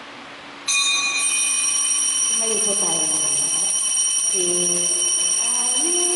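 A bell starts ringing suddenly less than a second in and keeps ringing steadily as a continuous jangle, signalling the start of Mass and the entrance procession.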